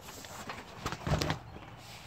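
Section of a folding soft tonneau cover being laid back down, its frame giving two quick knocks against the bed rails about a second in, the second louder.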